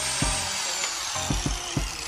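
Electric angle grinder fitted with a wire cup brush, running against steel: a steady, even grinding noise with a faint high whine that sinks slowly in pitch.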